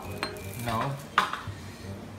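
Dishes and cutlery clinking lightly in a kitchen, with a sharp click about a second in.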